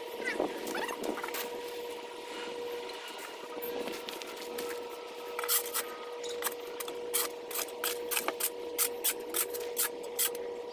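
Garden rake scratching and scraping through dirt and dry yard debris in quick, uneven strokes that pick up about halfway through, with a steady hum underneath.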